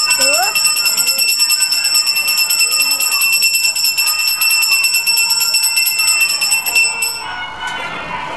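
A metal hand bell rung rapidly and without a break during the lamp offering (arati) of a Hindu puja. It stops suddenly about a second before the end, with voices beneath it.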